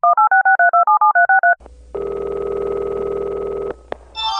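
Touch-tone telephone dialing: about eleven quick two-note beeps in under two seconds. Then comes a steady ringing tone on the line for about two seconds, cut off by a short click near the end.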